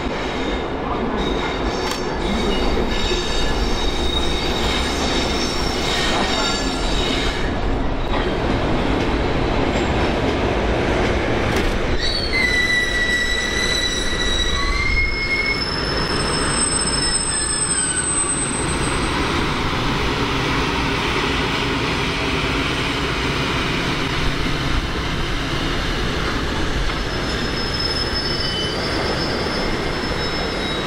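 Two coupled electric locomotives rolling past, an EF510 hauling an unpowered EF64, with a steady rumble of wheels on rail and irregular clicks over the joints and points. Partway through, the wheels give off high-pitched squeals for a few seconds.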